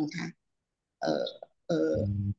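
A person's voice speaking a few short phrases separated by pauses, ending in a low, drawn-out sound.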